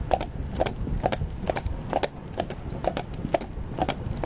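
A Friesian horse's hooves clip-clopping on a tarmac road at a walk, about four hoofbeats a second, over a low rumble.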